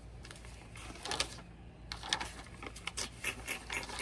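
Scattered light clicks, taps and rubbing from hands handling small objects, including picking up a pencil, irregular and quiet, busier in the second half.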